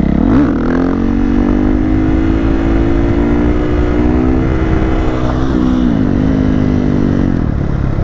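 Husqvarna FE 501's single-cylinder four-stroke engine through an FMF full exhaust, revved up sharply to lift the front wheel, then held at a steady pitch on the throttle through a second-gear wheelie. Late on the revs dip briefly and pick up again.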